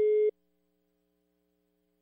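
Telephone line tone: one steady electronic beep that cuts off suddenly about a third of a second in, the call having just been hung up. Near silence follows.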